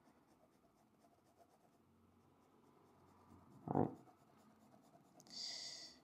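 Pen scratching on sketchbook paper in faint short strokes as a drawing is shaded, with a louder stretch of quick back-and-forth shading strokes near the end.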